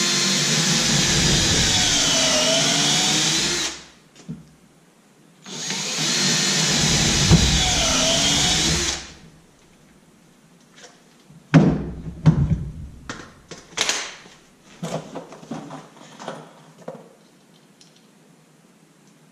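Cordless drill driving two-and-a-half-inch drywall screws through stacked hockey pucks into a broken hockey stick: two runs of about four and three and a half seconds, the motor's whine dipping in pitch midway through each as the screw bites, then picking up again. After them come scattered knocks and clatter, the loudest about a second and a half after the second run stops.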